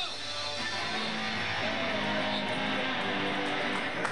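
Electric guitar ringing out held chords on its own, with no drums, shifting to new notes partway through.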